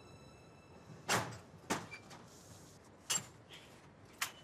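Glass entrance door being pushed open and swinging shut: three sharp clacks within about two seconds over faint background hiss.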